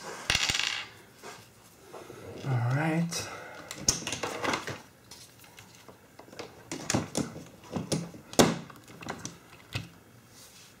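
Sharp metallic clicks and taps from BNC connectors and a cable being handled and plugged into a small signal box's BNC sockets, coming thickest in the second half. There is a rustle near the start.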